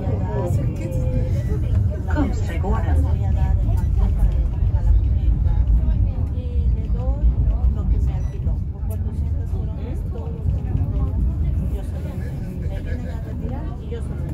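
Steady low rumble of a moving tram heard from inside the car, with people talking in the background.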